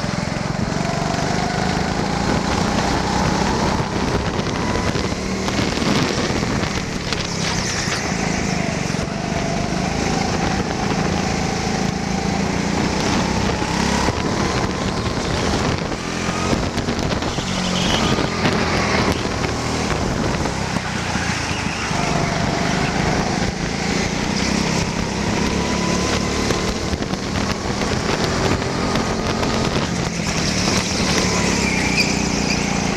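Onboard sound of an indoor racing kart at speed: its motor's pitch climbs steadily along the straights and drops back for the corners, several times over, with wind noise on the camera.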